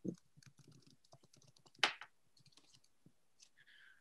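Near silence on a video call, with faint scattered clicks and one short, louder click-like noise about two seconds in.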